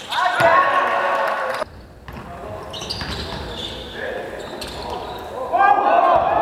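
Indoor basketball game sounds echoing in a sports hall: players' voices calling out and the ball bouncing on the court. The sound drops off suddenly about a second and a half in, then the hall noise builds back, loudest near the end.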